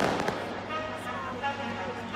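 Aerial fireworks going off: one loud burst right at the start, trailing off into crackling.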